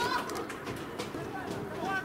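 Live pitch sound of a football match: players' short shouts and calls, one near the start and one near the end, with a few sharp knocks in between.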